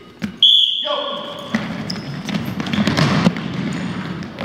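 Basketballs bouncing on a hardwood gym floor among children's voices. About half a second in, a loud, high, steady shrill note lasts about a second.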